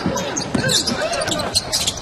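A basketball dribbled on a hardwood court, with short thuds and squeaks of play over an arena crowd's murmur.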